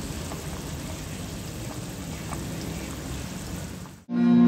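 A pot of water at a rolling boil with a carburetor body sunk in it, a steady bubbling hiss with a few faint pops. The carburetor is being boiled to loosen deposits from its clogged jets and passages. The sound fades out just before the end.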